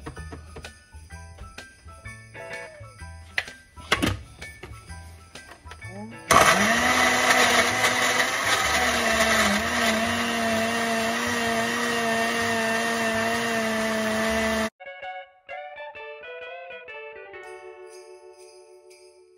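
Countertop blender with a glass jar running for about eight seconds, puréeing banana chunks with coconut milk: the motor whine comes up to speed about six seconds in, holds steady, and cuts off suddenly near the end. Christmas-style background music with jingle bells plays before and after.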